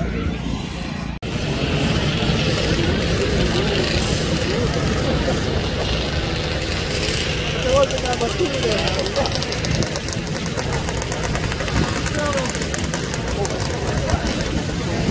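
Snowmobile engines running in the pits, steady throughout, with a crowd's indistinct talking mixed in.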